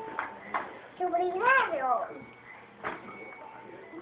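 A young child's voice babbling in made-up gibberish 'language': one high, sing-song phrase that rises and falls about a second in, with a few brief knocks around it.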